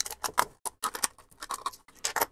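Small screwdriver prying and scraping old, crumbling hot glue out of a black plastic project enclosure: an irregular run of sharp clicks and short scrapes.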